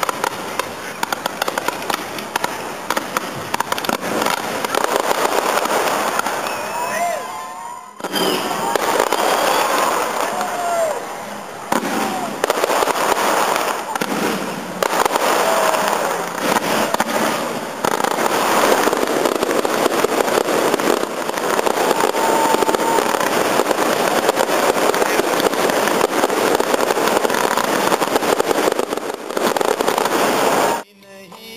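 A fireworks display going off: dense, continuous crackling and popping, with people's voices heard over it.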